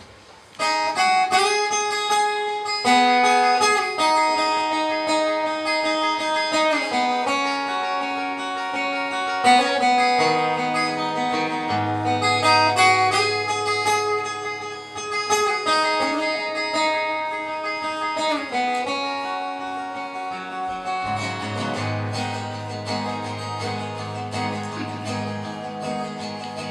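Solo steel-string acoustic guitar playing the instrumental introduction to a folk song: picked notes ringing one after another over low bass notes, starting about half a second in.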